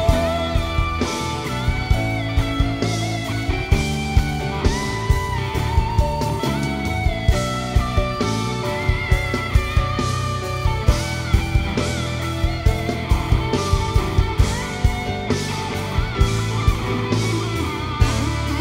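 Live band playing an instrumental passage with a guitar-led melody over a steady drum beat, and no singing.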